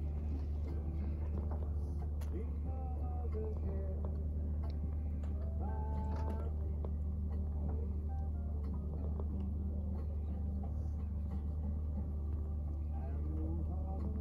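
Steady, even low hum of an idling boat engine, with faint voices of people talking at a distance over it.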